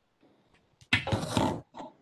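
A short, harsh vocal sound from a person, such as a snort or a rough laugh, about a second in and lasting under a second, followed by a brief softer one.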